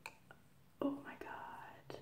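A woman's soft, whispered utterance lasting about a second, starting a little before the middle, after a faint click.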